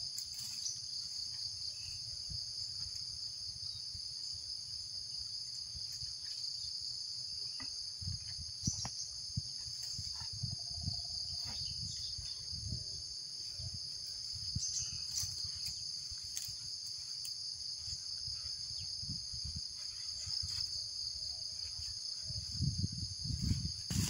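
Steady high-pitched chorus of insects running throughout. Under it are soft, irregular low thumps and rustles of gear being handled and footsteps on dry leaf litter.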